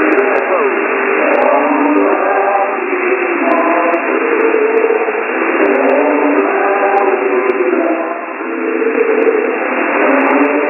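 Shortwave broadcast from WJHR on 15555 kHz, received in upper sideband on a software-defined radio: music with held notes, heard thin and narrow under a steady layer of static hiss.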